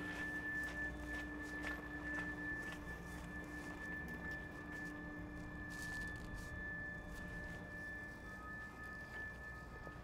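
Footsteps on a paved path, faint and irregular, over a low outdoor background. A steady high-pitched tone runs underneath throughout.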